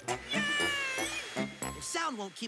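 High, meow-like cartoon creature calls, with one long wavering call in the first half, over background music with a steady beat.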